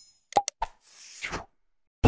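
Cartoon pop and click sound effects from a subscribe-button animation: a sharp pop about half a second in, two quick fainter clicks, then a short soft whoosh.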